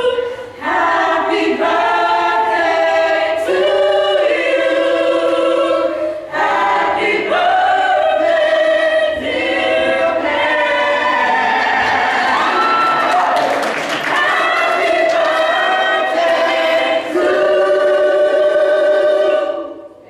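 Mixed youth choir singing in harmony, moving through a series of held chords. The singing cuts off together just before the end.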